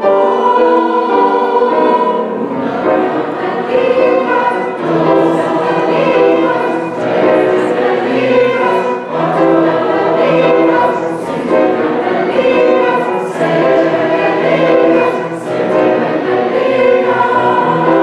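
Mixed choir singing a counting song in Ladino, with violin accompaniment.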